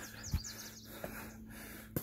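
A bird chirping in the background, a quick run of high wavering notes in the first half second. A low thump comes about a third of a second in, and a small click near the middle.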